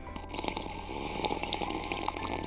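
A person slurping a hot drink through the lid of a paper cup: a run of small wet sips and clicks of sucked-in liquid and air.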